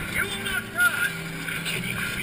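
X2 roller coaster train cresting the lift hill: a steady low mechanical hum whose pitch steps, with short rider calls over it. The loudest is a brief call a little under a second in.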